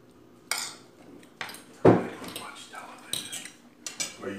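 A metal spoon and fork clink and scrape against a dish while eating, in a few separate sharp clinks. A heavier knock comes a little before two seconds in and is the loudest sound.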